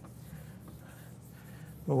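Whiteboard eraser rubbing faintly across a whiteboard; a man's voice starts right at the end.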